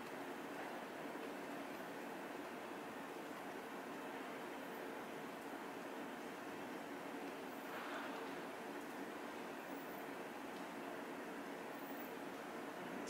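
Steady room tone: a low hiss with a faint steady hum.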